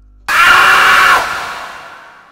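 A sudden, very loud burst of harsh noise, a horror-film jump-scare sound effect, cuts in about a quarter second in over a low hum. It holds for about a second, then fades out.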